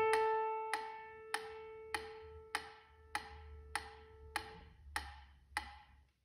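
Grand piano's final chord ringing and slowly dying away while a mechanical pendulum metronome ticks steadily, about 100 beats a minute.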